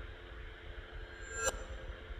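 Reversed recording of a teapot lid being struck: metallic ringing that swells up and cuts off sharply about one and a half seconds in, over a low steady hum.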